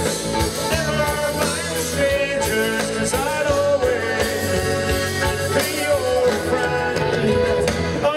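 Live rock band playing a loud instrumental passage, with a hollow-body electric guitar leading over acoustic guitar, bass and drums.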